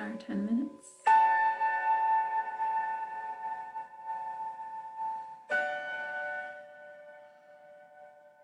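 Meditation-timer bell struck twice, about a second in and again about four seconds later, each strike ringing with several clear tones and fading slowly. It is the Insight Timer's bell marking the start of a ten-minute meditation.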